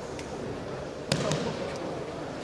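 A sharp slap or thud about halfway through, followed closely by a second, lighter one, over the steady murmur of voices in a large hall.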